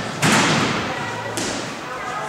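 A gymnast's feet striking the springboard in a loud bang that rings on for a moment, then, about a second later, a sharper thud as he lands a front handspring front tuck vault on the landing mat.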